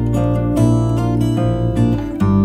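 Instrumental intro of a Vietnamese ballad: acoustic guitar picking single notes and chords over a steady, sustained bass line, with no singing.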